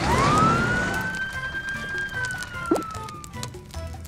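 One long siren wail for the toy fire truck, rising quickly, holding, then slowly falling away, over light background music.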